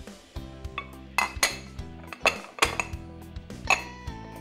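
Metal knife blade clinking and scraping against a porcelain ramekin as it is run around the inside to loosen a set caramel custard, with the ramekin then turned onto a plate: about five sharp, ringing clinks. Soft background music plays underneath.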